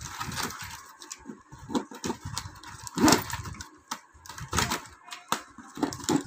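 Stiff plastic weaving tape (pattai wire) rustling, crackling and clicking as the strips are handled and threaded through a woven tray. The rustles and clicks come irregularly and are loudest about three seconds in.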